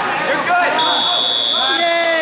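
Match timer buzzer sounding one steady high tone for about a second and a half, starting almost a second in, marking the end of time in a grappling match; people shout over it.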